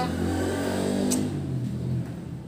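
A motor vehicle engine running, rising slightly in pitch in the second half, with a brief click about a second in.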